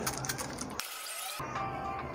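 A trigger spray bottle spritzing water onto a child's hair, with one hiss about half a second long about a second in, over background music.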